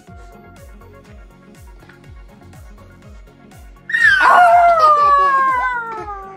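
Background music with a steady beat. About four seconds in, a toddler gives one loud, long, high-pitched squeal that slowly falls in pitch.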